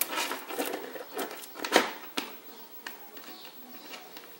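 Acrylic beads and faux pearls strung on a memory-wire bracelet clicking and rattling against each other and against its metal spacer bars as the bracelet is handled, about a dozen irregular clicks with the loudest a little under two seconds in.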